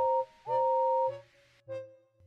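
Steam locomotive whistle blowing twice, a short blast then a longer one. Each is a chord of tones that slides up in pitch as it starts. A fainter, lower note follows near the end.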